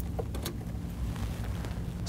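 Steady low rumble of room noise, with a few faint short clicks near the start as a USB jump drive is pulled from the ExpressVote voting machine's slot.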